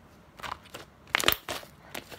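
Hands squeezing and stretching slime, giving short sticky clicks and pops. There are a few small ones about half a second in and a louder cluster just after one second.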